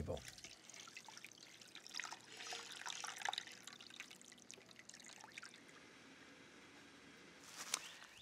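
Liquid brine poured from a stainless steel stockpot over a slab of beef in a stainless steel pan: a faint trickle and splash, strongest between about two and four seconds in and dying away after about five seconds.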